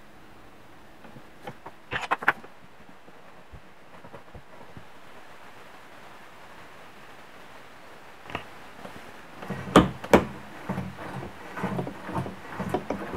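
Quiet room tone broken by handling noises on a metal engine mount: a quick cluster of sharp clicks about two seconds in, then a few knocks and light clatter near the end.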